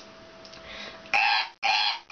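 A woman imitating a goose with her voice: two loud, harsh honks, each under half a second, starting about a second in.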